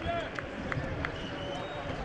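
Open-air football ground ambience: distant voices calling out on the pitch over a steady background hiss, with a few short sharp knocks in the first second.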